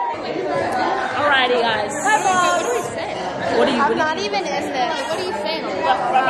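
Chatter of many voices talking over one another in a busy room, with a short high hiss about two seconds in.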